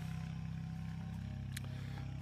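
A steady low mechanical hum, as of a motor or engine running, with a faint tick about one and a half seconds in.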